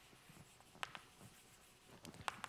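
Chalk writing on a blackboard, faint, with two sharp chalk taps in quick succession just under a second in.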